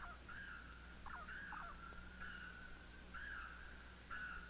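Faint animal calls from a rain-forest background track: short held call notes, about one a second, with a few quick falling chirps between them. A steady low hum runs underneath.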